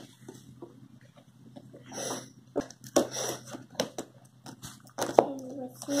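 Scissors cutting into a cardboard box and the box being handled: scattered snips, scrapes and short knocks, the sharpest about five seconds in.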